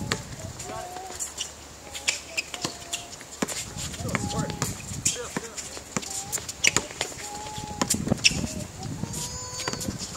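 A basketball being dribbled and bounced on an outdoor hard court, a string of irregular sharp thuds, with players' voices calling out in short bursts.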